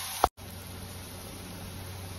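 Onions and spices frying in oil in a kadai: a soft, steady sizzle. A single click and a moment's dropout come about a quarter second in.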